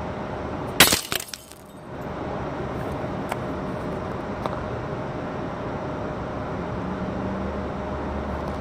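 A glass beer bottle smashing with one sharp crash about a second in, followed quickly by a short scatter of breaking glass. After that comes only a steady background hiss with a couple of faint ticks.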